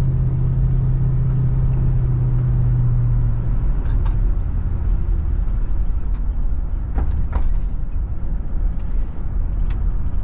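A car driving, heard from inside the cabin: steady engine drone and road noise. A steady hum drops lower in pitch about four seconds in, and a few faint clicks come through now and then.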